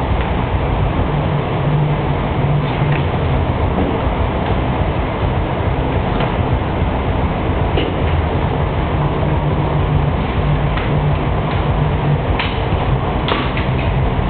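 Steady low rumbling noise throughout, with a scattering of sharp knocks from a street-hockey ball and sticks hitting the goalie's pads, the net frame and the concrete floor.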